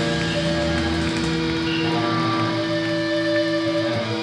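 Live band's electric guitars ringing out through their amplifiers, holding steady sustained notes that change right near the end.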